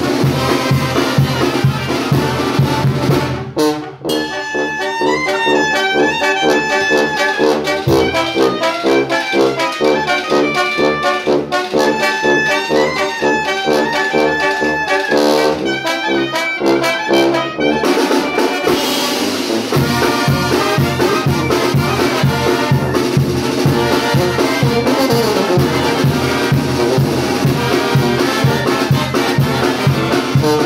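Mexican banda brass band playing live: trombones, clarinet and sousaphone over snare and bass drum. About four seconds in, the drums drop out and the winds carry a melodic passage alone. The full band with drums comes back in near the two-thirds mark.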